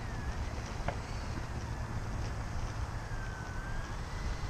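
Electric ducted fan of an RC F-4 Phantom II jet whining at low throttle while it taxis, the thin whine drifting up and down in pitch. A low wind rumble on the microphone runs under it, with one short click about a second in.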